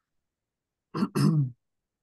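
A person clearing their throat once, about a second in, in two quick parts.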